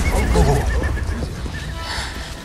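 A horse whinnies in a quavering call in the first second, over a deep low rumble that fades away.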